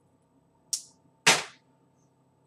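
Two short, sudden noises about half a second apart, the second louder and fuller than the first.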